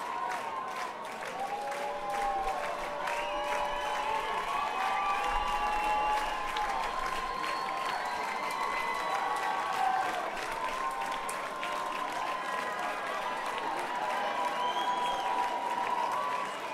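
Concert audience clapping and cheering steadily, with shouts and whoops, during the break before the encore, calling the band back on stage.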